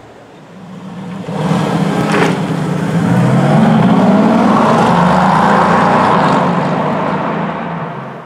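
Mercedes-AMG GT's twin-turbo V8 driving past, building up over about a second, running loud for several seconds, then fading away.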